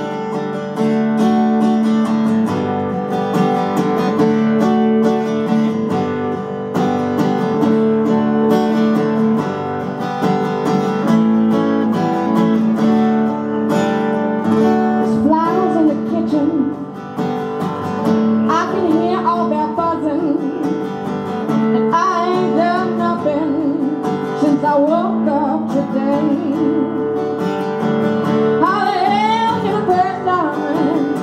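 Live acoustic song: a steel-string acoustic guitar strummed steadily, with a voice singing over it.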